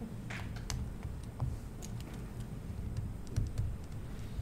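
Irregular light clicks and taps of a pen stylus on a tablet screen while digital ink is erased and written, with one short scratchy stroke near the start, over a steady low room hum.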